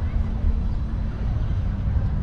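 Steady low rumble of city road traffic with a faint engine hum.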